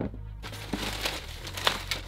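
Tissue paper crinkling and rustling in a shoebox as a pair of sneakers is unwrapped and lifted out, with a few short handling clicks, over background music.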